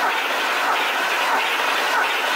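Starter cranking the Corvette Z06's cold LS7 V8 over without firing, its ignition coils and fuel injectors disconnected, as a steady, even cranking noise. This is a compression test on cylinder three, which comes up to about 220 psi, a healthy reading.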